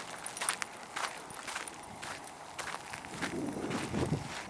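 Footsteps of a person walking on a dirt trail: a series of soft footfalls.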